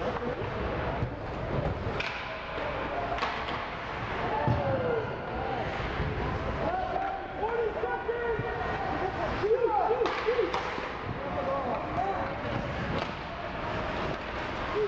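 Ice hockey rink ambience: indistinct shouted calls from players and spectators, loudest around the middle and later part, over steady arena noise, with a few sharp clacks of sticks and puck on the ice.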